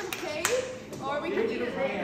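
A few sharp hand claps, the loudest about half a second in, among the indistinct voices of a group of people in a room.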